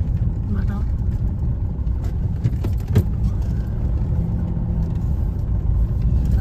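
Car cabin noise: steady low engine and road rumble of a car creeping at low speed in stop-and-go traffic, with one sharp click about halfway through.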